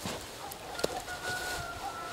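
A dog whining: a thin, high, nearly steady whine that starts a little under a second in and carries on, with a couple of sharp clicks just before it.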